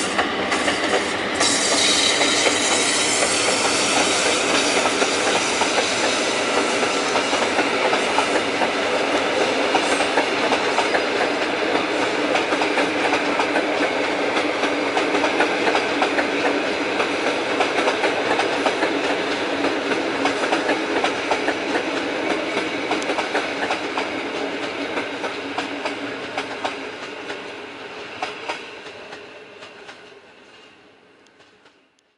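Electric-hauled passenger train rolling past, its coach wheels clattering steadily over the rail joints. The sound fades over the last few seconds as the train draws away.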